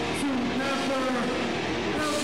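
Hardcore band playing live and loud: a steady wall of distorted guitar and drums, with vocals yelled into a microphone over it.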